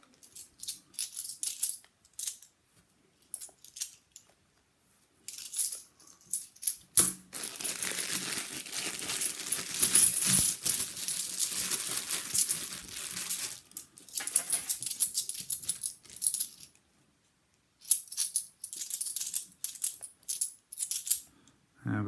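Plastic coin bags crinkling while bimetallic £2 coins clink and jingle as they are handled and set down on a towel. There are scattered clicks at first, then a long stretch of dense bag rustle and coin jingle through the middle with one sharp knock, then more clicks.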